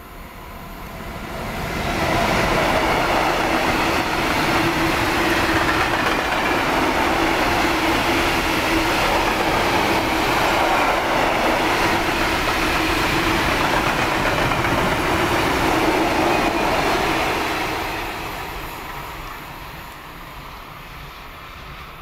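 Freight train of open scrap wagons hauled by a DB class 185 electric locomotive passing close by. The wheels running on the rails rise over the first two seconds and hold steady and loud for about fifteen seconds as the wagons go by, then fade away as the train recedes.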